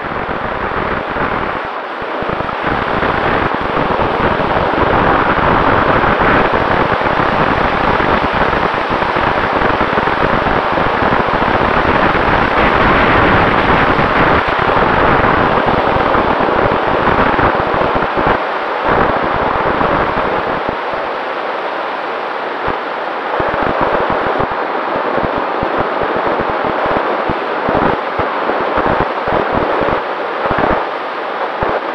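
Airflow rushing over the onboard camera microphone of a Multiplex Heron sailplane in flight, with crackling buffeting that comes and goes. Under it runs a faint steady hum from the electric motor and folding propeller running at part throttle.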